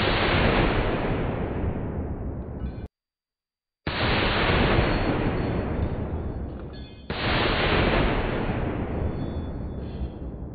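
.50-caliber belt-fed machine gun fired three single shots: one right at the start, one about four seconds in and one about seven seconds in. Each is a heavy boom with a long rolling echo, and the first two echoes cut off suddenly. The gun fails to cycle on its flimsy golf-cart-roof mount, so it fires only one round per pull.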